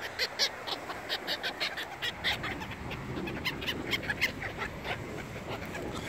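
A flock of gulls calling: rapid short, sharp squawks, several a second.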